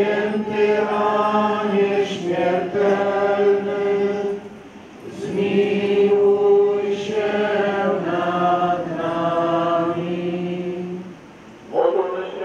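Church hymn being sung in long held notes, in two phrases with a short break just before the halfway point.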